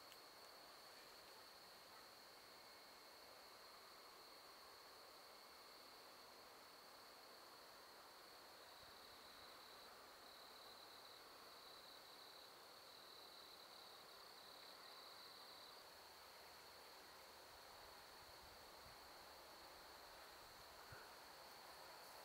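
Faint, steady high-pitched trill of crickets, with a second, pulsing trill just below it through the middle.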